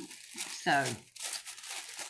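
Thin tissue paper crinkling and rustling as it is unfolded by hand, with a short tearing sound where the taped tissue gives way.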